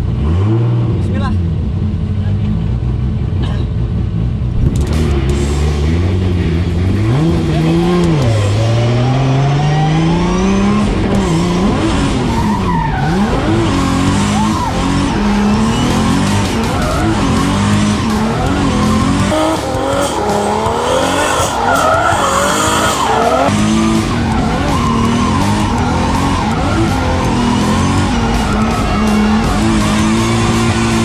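Drift car's engine revving hard, its pitch rising and falling again and again, with tyres squealing and skidding through a drift. The tyre noise thickens from about five seconds in.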